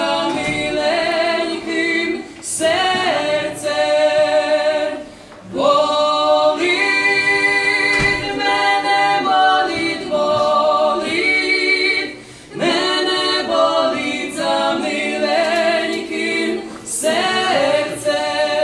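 Lemko folk trio, a man and two women, singing a traditional song unaccompanied in close harmony, in long held phrases with short breaks for breath about five and twelve seconds in.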